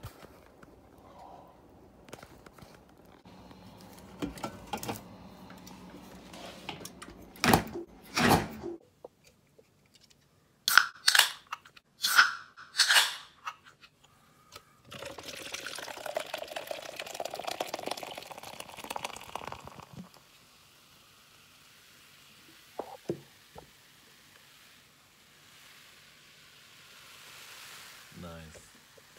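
Several sharp knocks and clicks of a jar being handled and opened, then about five seconds of small dry granules poured from the jar into a glass bowl, followed by a couple of light taps.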